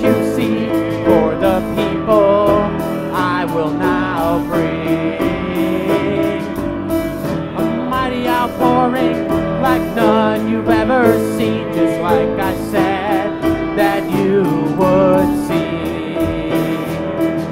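Live gospel worship music: an upright piano played with a voice singing over it.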